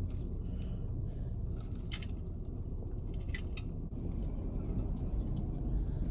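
Steady low rumble inside a car cabin, with a few faint clicks and sips as a soda is drunk through a straw.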